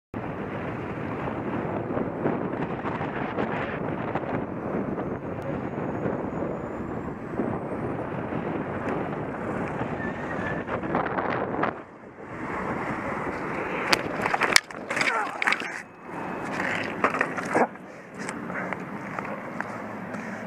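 Steady rolling noise of wheels on the road, with wind on the microphone, that breaks off about twelve seconds in. Two seconds later comes a burst of sharp knocks and clatter as the rider crashes, the loudest near the middle, followed by scattered scraping and handling sounds.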